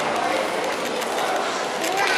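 Indistinct chatter of many people in a large indoor shopping-mall atrium, a steady background of voices with no clear words.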